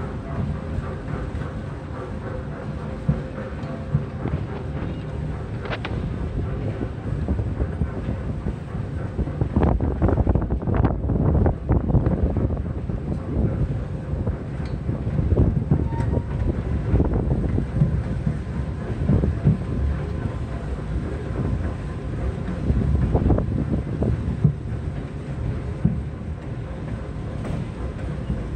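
Small open-air park train rolling along its track: a steady low rumble with scattered knocks and rattles from the cars, busiest about ten to twelve seconds in. Wind buffets the microphone.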